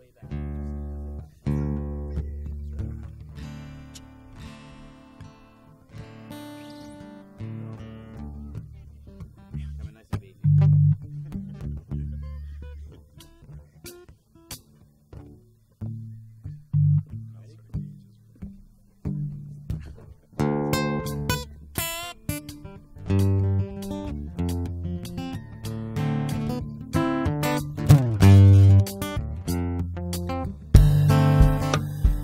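Live band playing: strummed acoustic guitar over keyboards and deep bass notes. The playing is loose and halting at first, then turns fuller and denser about twenty seconds in.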